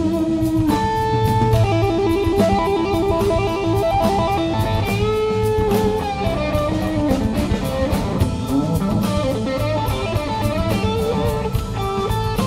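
Live blues-rock band playing an instrumental passage, led by an electric guitar playing held and bent single-note lines over bass and drums, with steady cymbal ticks.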